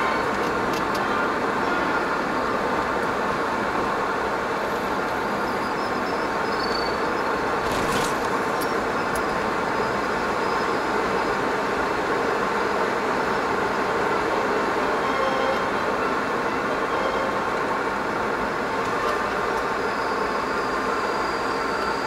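Car driving at steady speed, its engine and tyre noise heard from inside the cabin.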